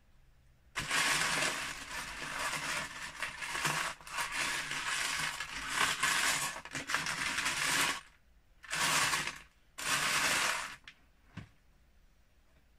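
Loose Lego pieces rattling and clattering in a plastic storage tub as a hand rummages through them: one long stretch of about seven seconds, then two shorter bursts and a single click near the end.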